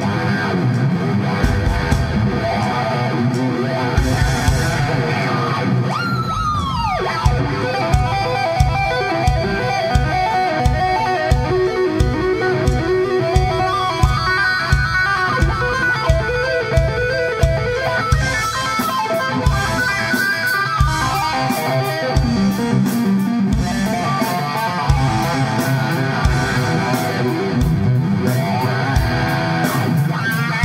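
Live instrumental rock played by a band: electric guitar lead over bass guitar and a steady drum beat. About six seconds in, the guitar dives sharply down in pitch.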